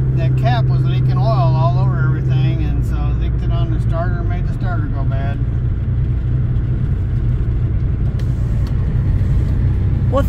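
Chevy Malibu under way, with engine hum and road rumble heard from inside the cabin. A strong low drone drops away about two and a half seconds in, leaving a steadier rumble.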